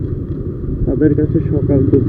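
Motorcycle engine running at low road speed, heard from the rider's own bike, with a steady rumble and some wind noise; voices start talking over it about a second in.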